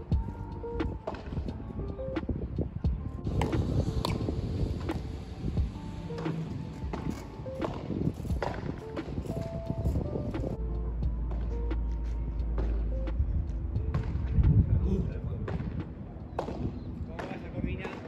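Music with held notes and a beat. Sharp knocks of a padel ball struck by rackets and rebounding off the glass walls sound over it.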